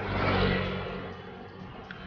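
A motorcycle passing close by: its engine swells to its loudest about half a second in, then fades away over the next second.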